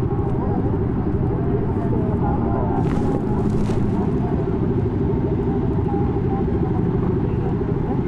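Many motorcycle engines idling together in a steady low rumble, with voices faintly in the background.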